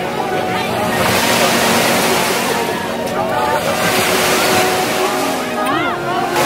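Waves washing on a beach, a rushing noise that swells and falls back every couple of seconds, with distant people's voices.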